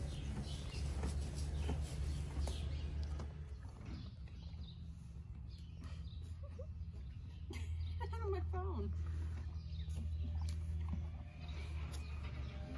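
A horse crunches hay as it pulls at a hay bag, over a steady low hum. Later, about eight seconds in, a short wavering voice-like call is heard.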